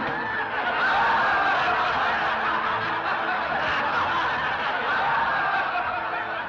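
Theatre audience laughing together, a steady mass of chuckles and laughs.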